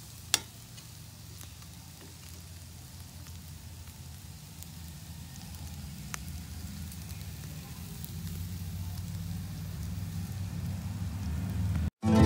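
Meat sizzling on a wire grill over hot charcoal, with faint scattered crackles and one sharp pop about a third of a second in. A low rumble underneath grows slowly louder.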